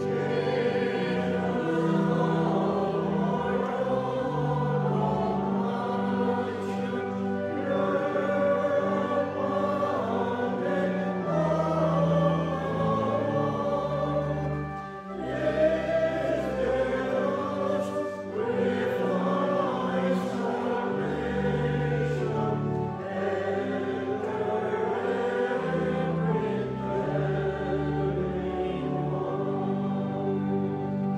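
A choir singing a hymn with sustained instrumental accompaniment, with a brief dip between lines about halfway through.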